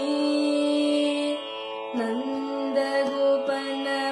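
Young woman singing Carnatic classical vocal: a long held note for about a second and a half, a short break, then gliding, ornamented phrases from about two seconds in. A steady drone carries on beneath the voice, even through the break.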